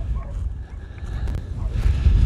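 Strong wind buffeting the microphone: a low, gusting rumble that swells louder near the end.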